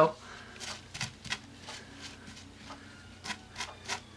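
Fingers pressing and smoothing glue-wet tissue paper onto a board: soft, irregular rustling and crinkling with scattered scratchy ticks.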